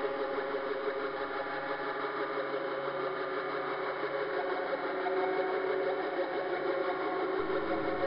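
Korg Monotron Delay analogue synthesizer sounding a sustained buzzing drone thick with overtones, its pitches slowly shifting; the tone changes slightly near the end.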